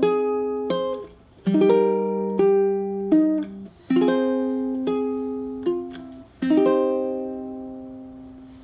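Ukulele playing a slow minor-key chord melody: single strummed chords with single plucked melody notes between them, each left to ring. The last chord, struck about six and a half seconds in, rings on and fades.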